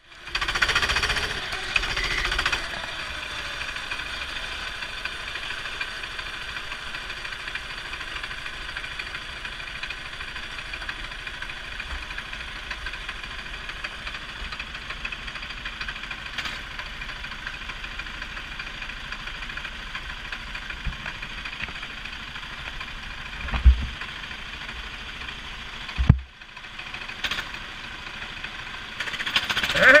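Four-stroke 270cc kart engines idling on the starting grid, heard from an onboard camera. They run steadily, a little louder in the first couple of seconds. Two dull low thumps come about six and four seconds before the end.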